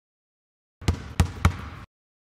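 Three sharp knocks about a quarter second apart, over a short stretch of background noise that starts about a second in and cuts off abruptly.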